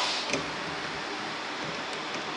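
Hands handling power-supply cables at a modular PSU's connector panel: one light click about a third of a second in, over a steady hiss.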